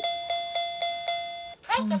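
A children's toy laptop playing a quick run of identical electronic beeps, about four a second, one for each counting dot that appears on its screen. The beeps stop about a second and a half in, and a voice starts counting near the end.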